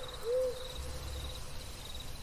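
A short owl hoot about a quarter of a second in, over a faint, high, pulsing insect trill: night-time ambience sound effect.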